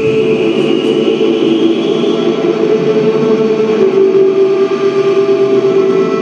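Live rock band, electric guitar and keyboard playing a droning passage of sustained tones, with no clear drumbeat.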